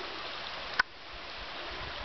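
Steady hiss of river water flowing. A single sharp click comes just under a second in, and the background is quieter after it.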